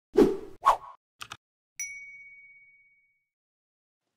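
Title-intro sound effects: two quick whooshes, a pair of faint clicks, then a single bright ding that rings out for about a second.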